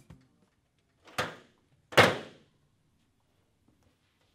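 Two thuds about a second apart, the second louder, each with a short fading tail in a small room.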